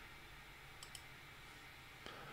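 Near silence: room tone, with two faint computer-mouse clicks close together about a second in.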